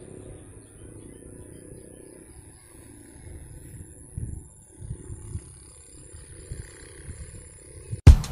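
Wind buffeting a handheld microphone in irregular low gusts, strongest about halfway through, with a faint steady high-pitched tone underneath.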